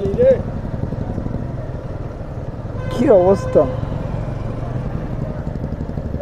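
Steady low rumble of a motorcycle being ridden, with two short stretches of speech over it.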